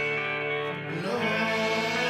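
Guitar music from an electric guitar: held notes ringing, moving to new notes a little after a second in.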